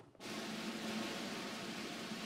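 A steady hiss that cuts in abruptly a fraction of a second in and then holds evenly, the sign of an audio feed or sound system being switched on.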